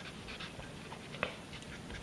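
Felt-tip marker writing letters on paper: faint, scratchy strokes, with one small tick a little past halfway.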